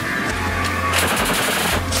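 A short burst of rapid automatic gunfire, about ten shots a second, starting about a second in and lasting under a second, over background music.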